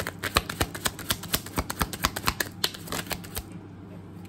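A deck of tarot cards being shuffled by hand: a quick run of card slaps, about six a second, that stops about three and a half seconds in.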